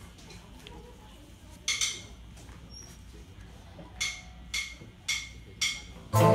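A drummer's count-in: a single click about two seconds in, then four evenly spaced clicks about half a second apart near the end.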